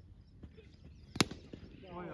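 A single sharp crack of a cricket bat striking a tape-wrapped tennis ball, a little over a second in, followed by men's voices starting to shout.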